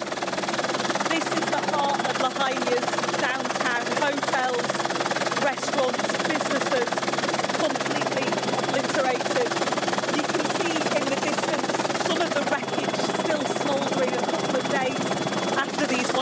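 Helicopter running steadily, heard from inside the cabin, with a muffled voice speaking over the engine and rotor noise.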